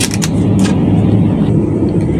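Steady low hum of supermarket refrigerated display cabinets, with a few light clicks in the first second.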